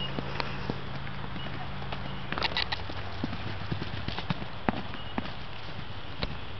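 Kaimanawa pony's hooves striking dry grassy ground in irregular hoofbeats, with a cluster of sharper strikes about two and a half seconds in.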